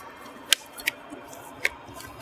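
Three short, sharp clicks, the loudest about half a second in, the others near one second and past one and a half seconds, over a faint steady hiss left from filtered-out highway traffic noise.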